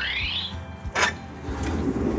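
A rising tone that dies away in the first half second, then a single sharp click about a second in as the hose tray in a fire engine's side compartment is handled, likely its latch or slide catch.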